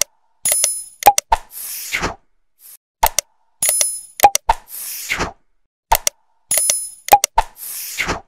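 Animated like-and-subscribe sound effects, repeated about three times: sharp mouse-click sounds, a bright bell-like ding and a short whoosh in each round.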